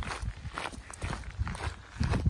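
Footsteps of several people walking on a gravel trail: a run of irregular, uneven crunching steps.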